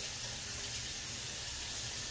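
Bathroom sink tap running, a steady rush of water.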